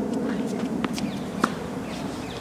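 Tennis ball struck by a racket and bouncing on a hard court: a few short, sharp knocks over steady background noise.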